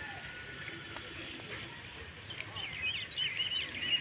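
A small bird singing a quick run of chirps, starting about halfway through, over faint outdoor background noise.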